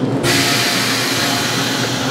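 A loud, steady hiss starts suddenly a moment in and holds even, over a steady low machine hum.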